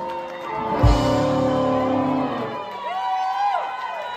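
Live rock band of electric guitars, bass and drums ending a song: a final hit about a second in, with the chord ringing on until about two seconds in. The crowd then cheers and whoops.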